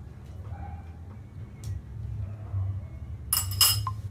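A short clink about three and a half seconds in, over a steady low hum with a few faint ticks.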